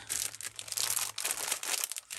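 Clear plastic sleeves around packs of paper crinkling and rustling as they are handled and shifted, in a run of rapid, irregular crackles.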